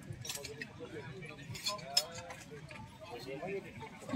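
Faint talking in the background, with a few light clicks and clinks as a small glazed ceramic dish is handled and turned over.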